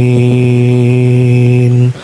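A man's voice chanting the dhikr into a microphone, holding one long steady note, then breaking off just before the end.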